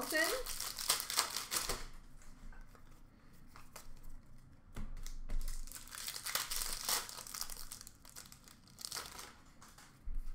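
Foil wrapper of an Upper Deck hockey card pack crinkling and tearing as it is opened by hand, in three bursts: a long one at the start, another in the middle and a short one near the end.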